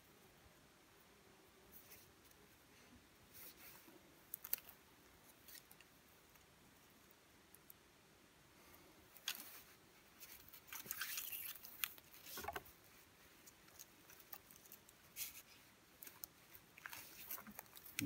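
Faint rustling and scraping of cord being pulled and wrapped around a wooden pole while a bowline is tied. It comes as scattered small clicks and rubs, busier and a little louder in the second half.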